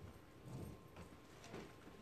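Near silence: room tone with a few faint, soft knocks or taps.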